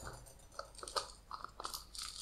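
Faint clicking and scraping of a small plastic screw cap being twisted onto a spice jar: a few short ticks spread through the middle of the moment.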